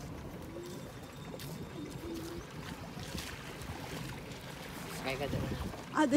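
Water lapping and sloshing against a small boat's hull, a steady low wash with faint voices in the background.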